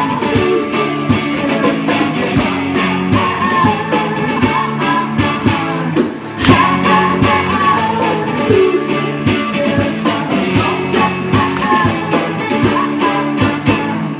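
Live rock band: a woman singing over electric guitar, with percussion keeping a steady beat.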